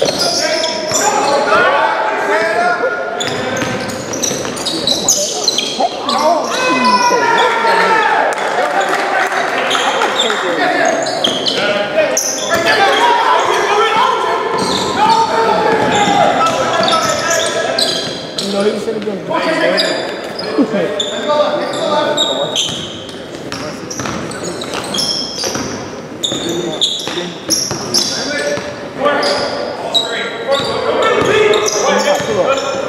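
Basketball game on a hardwood court: the ball bouncing with players running, and players and coaches calling out, all echoing in a large, mostly empty gym.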